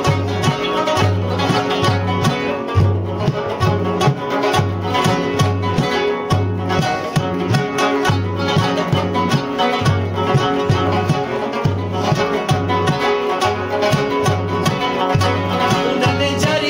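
Rubab playing a fast plucked melody over a steady beat on a duff frame drum, the instrumental opening of a ginan.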